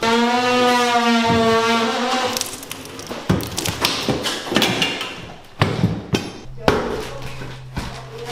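A pry bar levering a kitchen base cabinet off the wall. A long creaking squeal of wood and fasteners lasts about two seconds, then come several sharp knocks and thuds as the cabinet breaks free and debris is struck.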